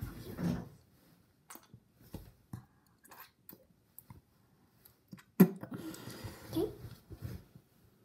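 A terry cloth rubbing over a child's lips and face in short, scattered strokes as lipstick is wiped off. About five and a half seconds in comes a sudden loud vocal noise from the child, with a few more sounds after it.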